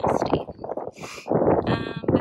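Wind buffeting a phone's microphone in gusts, with a short hiss about a second in.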